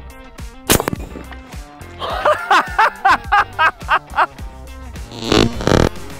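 A single sharp shot from an Umarex Hammer .50 caliber air rifle about a second in, followed by a man laughing, all over background music.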